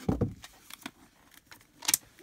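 Handling of packaged paper craft supplies: a dull thump at the start as something is set down, a few light clicks, then a short crinkle of plastic packaging near the end.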